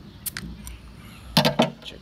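A metal bottle opener clicking against the crown cap of a glass beer bottle as the cap is pried off, with a few light clicks and then one louder sharp snap about one and a half seconds in.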